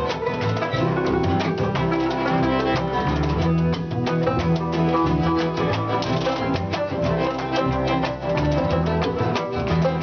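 An acoustic folk string band playing an upbeat tune: five-string banjo picking over upright bass, with fiddle and a gloved washboard rhythm.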